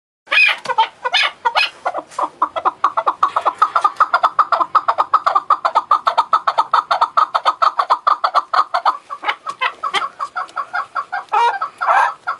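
Chukar partridge calling: a few loud chuck notes, then a long run of rapid repeated chuck notes, about eight a second, which breaks into irregular notes near the end.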